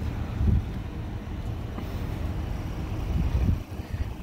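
Low rumble of vehicles idling close by, with wind buffeting the microphone in two stronger surges, about half a second in and again about three seconds in.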